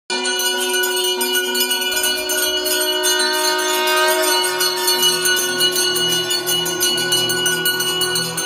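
Bells ringing continuously in rapid, even strokes over long sustained ringing tones, with a low pulsing beat joining about halfway through.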